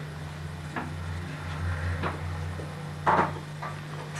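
Small toy doll's pushchair rolled along a carpeted hallway: a low rumble from its wheels, with a few light knocks and a short clatter just after three seconds.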